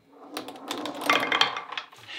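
Rapid rattling clicks of small pieces knocking against the round pegs of a tabletop arc-demonstration board. The clicks build up about half a second in and go on in a quick, irregular patter almost to the end.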